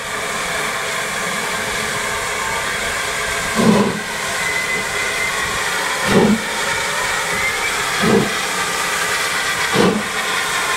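GWR Castle Class 4-6-0 steam locomotive 7029 Clun Castle pulling away from a stand: four loud exhaust chuffs, coming closer together as it gathers speed, over a steady hiss of steam.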